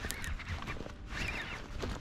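A bird giving two short calls a little past a second in, over light clicks from a fishing reel being wound.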